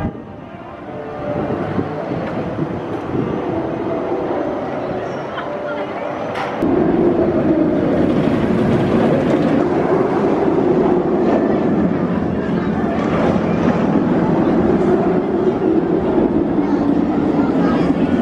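Steel inverted roller coaster train running along its track: a steady rumbling roar that comes in abruptly about six and a half seconds in and carries on.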